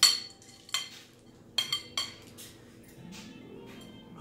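Metal whisk clinking and scraping against a glass mixing bowl, knocking chocolate chips and walnuts out: four sharp, ringing clinks in the first two seconds, the first the loudest.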